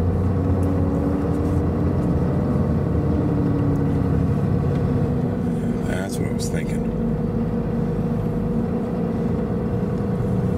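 Ram 2500's Cummins diesel engine pulling steadily at low speed as the truck crawls up a snow-drifted trail, heard from inside the cab, its pitch rising slightly in the first few seconds. A few short high-pitched sounds come about six seconds in.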